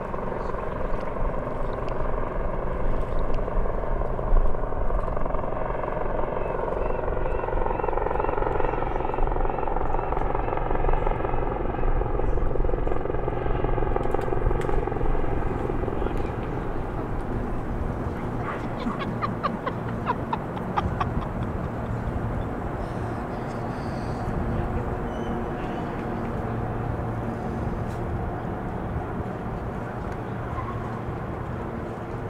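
Aircraft engine drone sliding slowly in pitch, loudest in the first half and fading after about 16 seconds, over a steady low city hum. A short run of rapid clicks comes about 19 seconds in.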